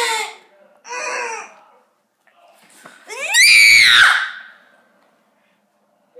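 A child screaming. A short shrill scream trails off at the start and another short one follows about a second in. About three seconds in comes the loudest, a long scream that rises in pitch.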